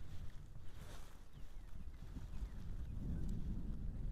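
Wind rumbling on the microphone, a little stronger in the second half, with a few faint high chirps.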